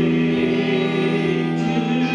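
A small live band playing with long held notes: electric guitar, violin and bass guitar, with a drum kit.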